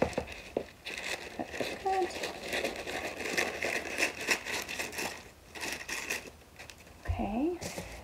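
Sheet of parchment paper crinkling and rustling in many small irregular crackles as it is pulled from the roll, cut with scissors and smoothed flat by hand over a plastic bin.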